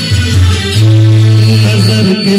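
Loud amplified music with long held low bass notes, with a man singing into a handheld microphone over it.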